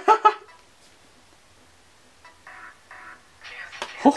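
A man's drawn-out vocal exclamation that breaks off about half a second in. After it there is a low, quiet stretch with only faint, brief background sounds.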